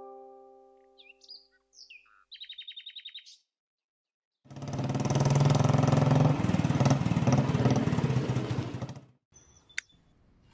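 A last piano note fades out, birds chirp with a short rapid trill, and then a motorcycle engine runs loudly for about four and a half seconds, starting and cutting off abruptly.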